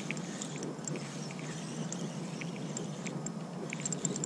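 Daiwa Legalis LT 3000 spinning reel being cranked to bring in a fish after a bite: a soft steady whir with faint, scattered small ticks.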